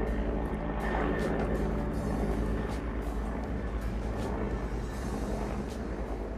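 Helicopter passing overhead, heard through an open window as a steady low drone.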